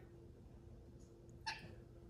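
A toddler's single short "nah!" about one and a half seconds in, as a refusal to say hi. Otherwise near silence with a faint steady room hum.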